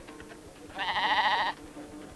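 A sheep bleating once: a single loud, wavering bleat of under a second, about a third of the way in.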